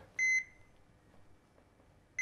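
Hospital heart monitor beeping: one short, high electronic beep about a fifth of a second in, part of a slow, even beep repeating roughly every two seconds.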